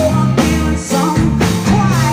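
Live rock band playing: a woman's strong sung vocal over electric bass, keyboard and drums keeping a steady beat of about two hits a second.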